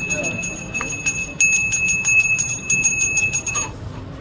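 A hand bell ringing rapidly and continuously, its clapper striking many times a second, until it stops suddenly near the end.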